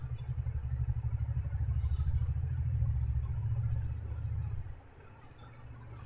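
A low, fluttering rumble, like an engine running nearby, that cuts off suddenly near the five-second mark, with a few faint clicks over it.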